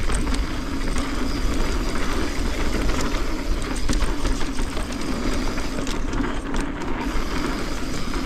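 Mountain bike rolling fast down a dirt singletrack: a steady rumble of knobby tyres on dry dirt, with frequent small clicks and rattles from the bike over the bumps.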